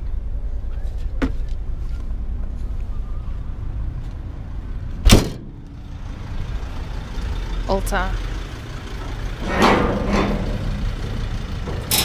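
A vehicle door shut with one loud slam about five seconds in, after a lighter click about a second in, over a steady low rumble.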